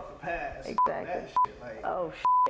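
Conversational speech cut twice by short censor bleeps, a steady 1 kHz tone, about half a second apart; the bleeps are the loudest sound.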